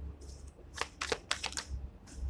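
A tarot deck being shuffled in the hands, with a quick run of crisp card snaps about halfway through.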